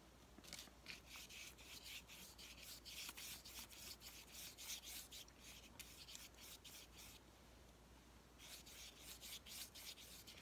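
Faint, scratchy strokes of a damp paintbrush brushed lightly back and forth over painted chipboard, several strokes a second, with a pause of about a second some seven seconds in.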